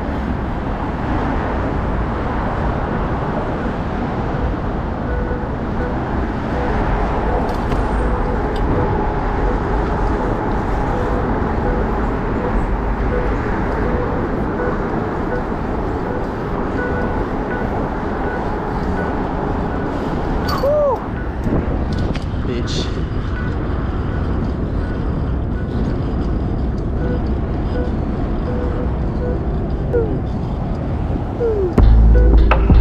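Wind buffeting the microphone and road noise while riding a BMX bike over a bridge with traffic alongside: a steady loud rumble, with a brief squeal about two-thirds in.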